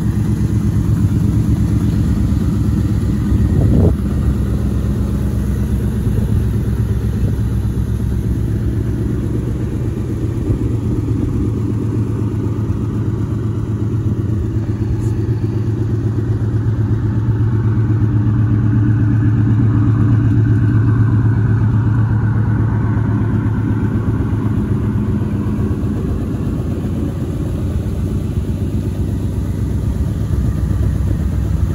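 2000 Ford Mustang GT's 4.6-litre V8 idling steadily, with a brief thump about four seconds in. The owner says the car still has an exhaust leak.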